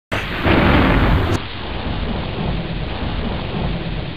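Heavy rain with a loud rumble of thunder in the first second and a half, then the rain going on steadily.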